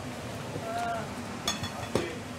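Indistinct voices and room noise, with a short faint tone near the middle and two sharp clicks or knocks in the second half.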